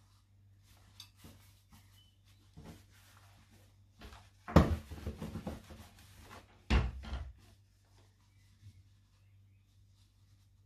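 Cotton fabric being handled and smoothed on a table, with two louder knocks and rubs, about four and a half and seven seconds in, as a clothes iron is brought down and pressed on the cloth.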